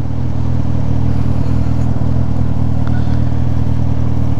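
Motorcycle engine with its silencer removed, exhausting through the bare pipe, running steadily at a standstill. It gives a loud, low exhaust note, a little louder in the first half-second and then even.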